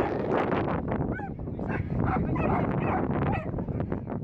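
Dogs yipping and whining, a string of short high whines that bend up and down in pitch.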